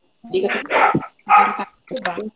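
Two barks, each about half a second long, one after the other.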